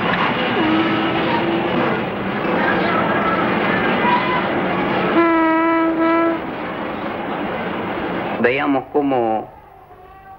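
Diesel locomotive running close by with a steady rumble of engine and wheels, its horn sounding twice: a short single note about half a second in and a louder, fuller blast about five seconds in. The rumble drops off after the second blast, and a brief voice-like call follows near the end.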